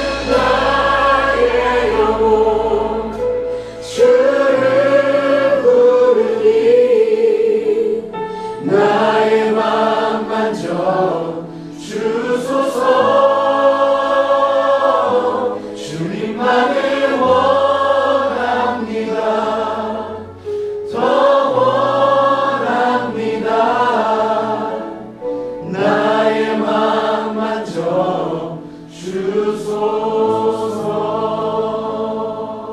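Contemporary Christian worship song: a congregation singing along with a praise band, in phrases a few seconds long over sustained bass notes.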